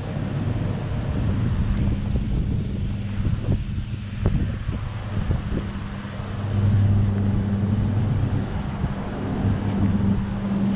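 Outdoor street ambience: wind rumbling on the microphone over a steady low mechanical hum, which grows louder about six and a half seconds in.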